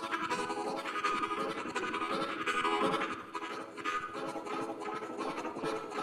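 Blues harmonica played live into a microphone with cupped hands, in a quick rhythmic pattern over the band.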